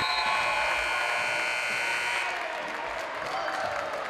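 Crowd in a gymnasium applauding and cheering, with a steady high-pitched tone over the noise that cuts off abruptly about halfway through.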